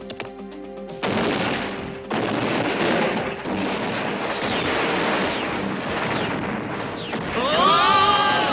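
Cartoon sound effects of a barrage of shells exploding. Light rapid clicks open it; from about a second in comes a continuous rumble of blasts with falling whistles through it. Voices shout near the end.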